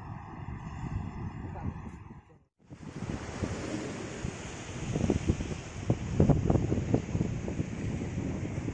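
Wind rushing over the microphone with sea water washing against a rocky shore, after a brief drop-out about two and a half seconds in. The wind gusts louder about five to seven seconds in.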